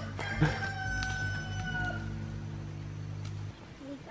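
A rooster crowing once, a long call that cuts off about two seconds in, over a steady low hum.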